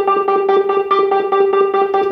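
Hypersonic 2 software synth electric piano ("Synth Wurli" patch) playing back a MIDI part: a single note repeated quickly and evenly, about eight times a second, at a steady pitch.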